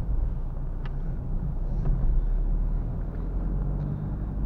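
In-cabin sound of a Renault Clio IV's 1.5 dCi four-cylinder turbodiesel pulling the car along at low town speed: a steady low engine drone with road rumble, and a single click about a second in.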